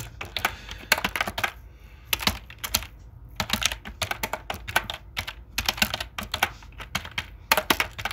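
Typing on a computer keyboard: quick runs of key clicks in several bursts with short pauses between them.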